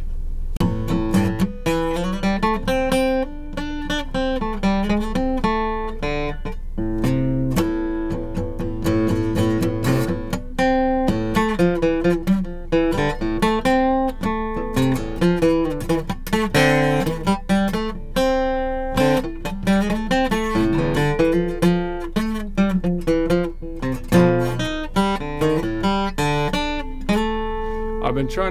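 Steel-string acoustic guitar played solo, improvising in A minor with a steady run of picked single notes and chords.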